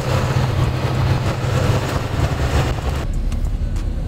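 AC sleeper bus on the move: a steady low engine drone with road and wind hiss. About three seconds in, the hiss drops away and leaves a duller low rumble.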